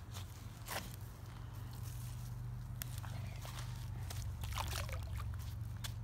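Scuffs and small knocks of a child's steps and handled rocks on a stony lakeshore, then a small splash as a thrown rock lands in the lake, all over a low steady rumble.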